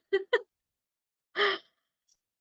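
A woman laughing softly in short breathy bursts: two quick ones, then one more about a second later.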